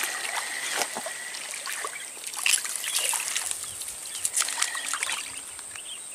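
Hooked fish splashing and thrashing at the water's surface as it is reeled in, in irregular splashes and sharp clicks.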